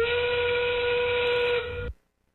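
The FTC match system's endgame signal, a steam-whistle sound effect, marking 30 seconds left in the match. One long whistle that rises briefly in pitch as it starts, holds steady and cuts off suddenly.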